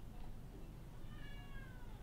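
Domestic cat giving one drawn-out meow, its pitch falling slightly, starting about a second in.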